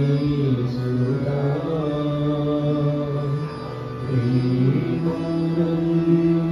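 Men singing a Hindu devotional bhajan to harmonium accompaniment, holding long notes, with a short lull about three and a half seconds in before the next phrase.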